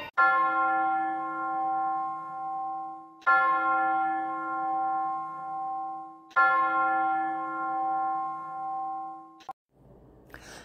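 A bell tolling, struck three times about three seconds apart, each stroke ringing on with a wavering hum as it dies away. It is a mourning toll that leads straight into the reading of death notices.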